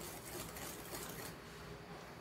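Faint wire balloon whisk beating creamed cake batter in a glass bowl, a fast run of soft light ticks and swishes.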